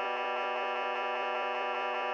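A clavinet-like sampled note held in Ableton Live's Simpler instrument, its short sample loop repeating so the tone flutters evenly several times a second. It plays through a fuzz distortion effect.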